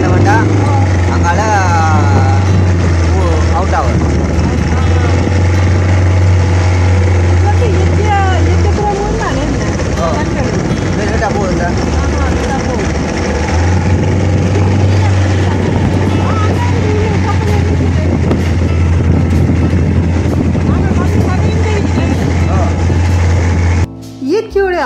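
Small boat's outboard motor running with a steady low drone over wash and wind noise, dropping away for a few seconds near the middle before picking up again.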